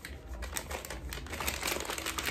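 Crinkling and rustling of a plastic packet of wipes being pushed and squeezed into a fabric pouch, a dense run of irregular crackles.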